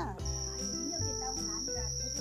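A steady high-pitched cricket trill, with soft background music of held notes underneath.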